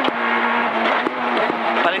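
Peugeot 208 R2 rally car's four-cylinder engine, heard from inside the cabin, running at steady revs. Its note steps down slightly at a sharp click near the start, and a few lighter clicks follow.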